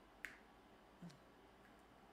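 Near silence (room tone) with a faint, sharp click about a quarter second in and a softer click about a second in.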